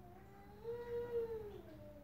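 A single long, drawn-out animal cry, rising and then falling in pitch, loudest in the middle and trailing off near the end.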